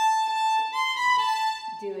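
Violin played with the bow: a long held high note, then a step up to a slightly higher note and back down again, stopping shortly before the end.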